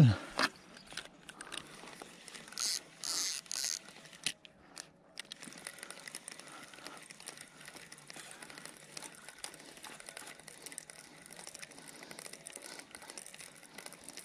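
Spinning reel being cranked to retrieve the line, a faint run of fine clicks and rustle. Three short bursts of rustling about three seconds in.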